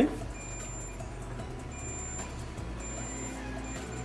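Low steady electrical hum from a plugged-in magnetic hair clipper's coil motor, shifting in strength a couple of times while its cord is handled. This fits the intermittent loose contact in the power cord that makes the clipper cut in and out. Faint background music plays along.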